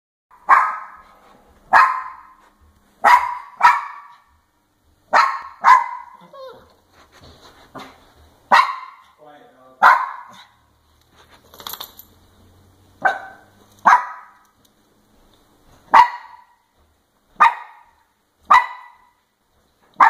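Small Papillon-Chihuahua mix dog barking: about a dozen sharp, separate barks, some in quick pairs, with pauses of a second or more between them.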